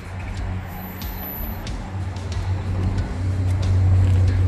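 Turbocharged engine of a 1930 Ford hot rod idling with a steady low hum that grows louder about two seconds in.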